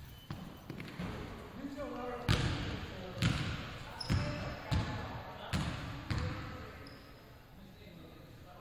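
Basketballs bouncing on a hardwood gym floor: six loud bounces, each under a second apart, from about two seconds in, echoing in the large hall.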